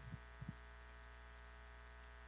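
Near silence with a steady electrical mains hum from the microphone and sound system, and two faint low thumps about half a second in.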